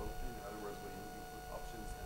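Faint speech from a person talking away from the microphone, over a steady electrical hum.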